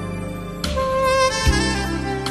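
Saxophone playing a slow, sustained melody over an instrumental backing. A new sax note enters about a third of the way in, and a low bass note with a soft hit comes in about three-quarters through.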